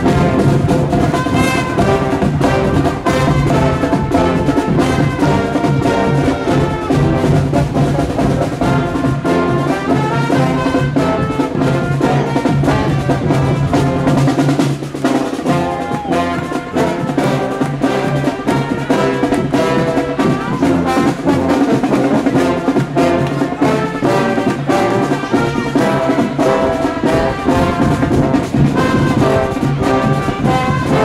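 Brass and percussion marching band playing a tune on the move, with trumpets and trombones carrying the melody over a steady drum beat.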